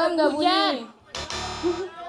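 A short game-show sound effect, a buzzing tone lasting just under a second, played about a second in after a contestant's guessed answer, over a woman's voice at the start.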